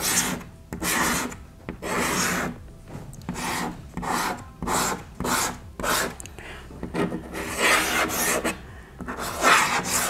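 Chalk scraping across a chalkboard in a series of short drawing strokes, about one a second, as lines are drawn on the board.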